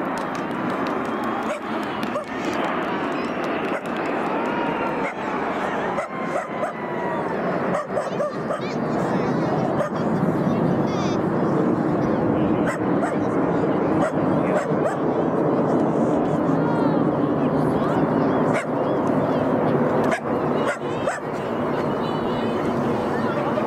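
BAE Hawk T1 jets of the Red Arrows flying past in formation: a broad engine rush with a whine that falls slowly in pitch over the first several seconds, growing louder around ten seconds in as the formation pulls up overhead.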